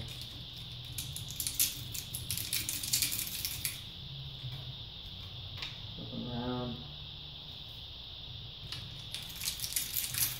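Sand grit scraping and crunching between a sapphire window and a glass window as the two are pressed together and rubbed around by hand. The gritty scratching is densest in the first few seconds, eases off, and picks up again near the end.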